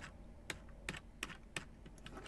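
Faint, separate clicks of computer controls while a web page is scrolled, about six of them spaced roughly a third of a second apart.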